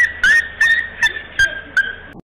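A dog yelping in a quick series of about six short, high-pitched cries, each rising at the start and then held briefly.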